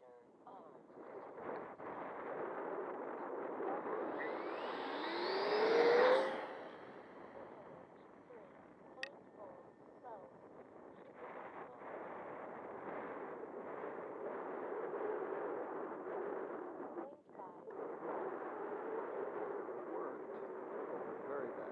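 Airflow rushing over the onboard camera of an RC plane in flight. A rising whine builds from about four seconds in and peaks as the loudest moment around six seconds. A single sharp click comes about nine seconds in, and the sound briefly drops out near seventeen seconds.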